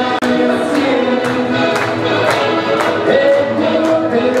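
Live band music with many voices singing together and hands clapping along in time, about two claps a second.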